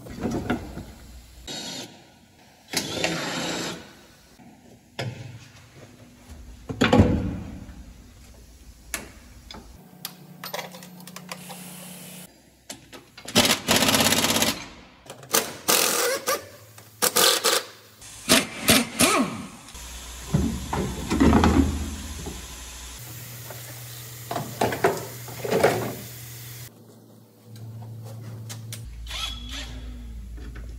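Tools and metal and plastic truck parts knocking and clattering during hands-on disassembly work: a string of separate knocks and rattles, with a few short noisy bursts of a couple of seconds each.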